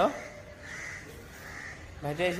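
Faint bird calls repeating every half second or so over low background noise.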